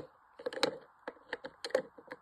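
Hard clear plastic bullion cases clicking and clacking against one another as they are handled and shuffled in a stack: an irregular run of quick, sharp clicks.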